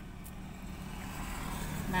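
Road traffic heard from inside a car cabin: a steady low hum that grows gradually louder.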